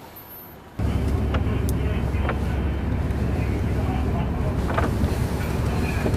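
Steady low rumble of engine and road noise inside a moving car. It starts abruptly under a second in, after near quiet, with a few faint clicks over it.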